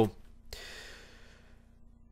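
A man's short breath out, a soft sigh about half a second in that fades away over about a second. A faint steady hum lies underneath.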